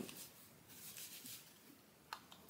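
Near silence: faint rustling of over-ear headphones being pulled up from the neck onto the ears.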